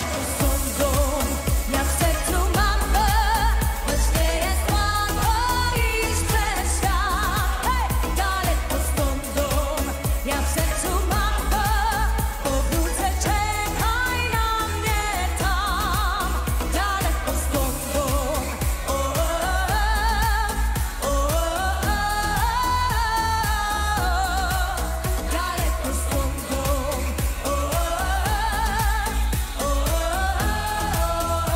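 Polish pop song: a woman singing in long, wavering phrases over a steady heavy bass beat.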